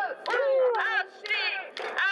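Women's voices shouting a protest chant, one amplified through a megaphone, with a long falling shout about half a second in.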